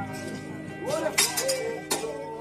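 Background music with a voice, over which two sharp metallic clinks sound, about a second in and near the end: steel track bars striking the rail.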